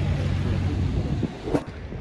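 Wind rumbling on the microphone over the wash of surf breaking on the shore, easing off suddenly a little after a second in.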